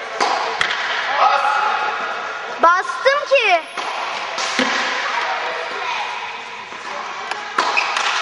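Tennis ball struck by a racket in a large indoor tennis hall: sharp hits about every two seconds. A quick run of high squeaks comes about three seconds in.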